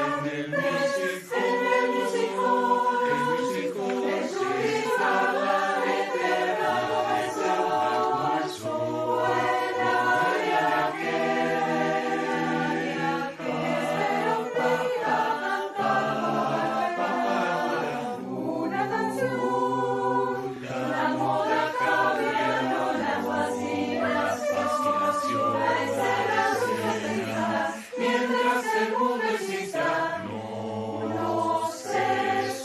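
A polyphonic choir of men's and women's voices singing in harmony, a virtual-choir mix of separately recorded singers.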